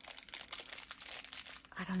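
A plastic candy wrapper crinkling around a small perfume sample vial as it is handled in the fingers: a quick run of fine crackles that gives way to a voice near the end.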